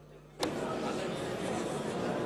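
A faint hum, then a click about half a second in as the hall microphone opens, followed by the steady hubbub of a crowded parliamentary chamber, many people talking among themselves.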